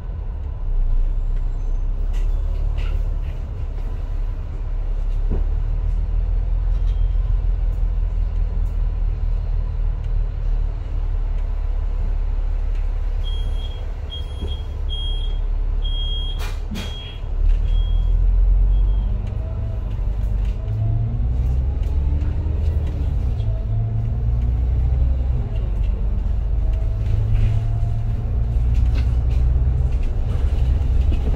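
Double-decker bus's engine running with a steady low rumble, heard from the upper deck. Around the middle, while it stands at a stop, a short high beep repeats about eight times, with one sudden sharp sound near the end of the beeping. After that the engine and drivetrain note rises again as the bus pulls away.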